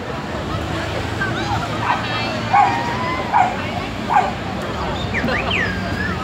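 A dog barking: three short barks about a second apart in the middle, with voices in the background.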